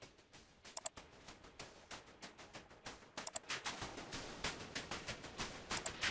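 Faint, thin, hissy residue of music: the codec difference signal, the part of the mix that a lossy AAC/MP3 encoding throws away. It grows louder about three seconds in, as a lower-bitrate codec is monitored, and a few short clicks stand out.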